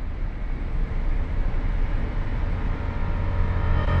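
Motorcycle riding along at road speed: a loud, steady, dense rumble of engine, wind and road noise picked up by a bike-mounted camera.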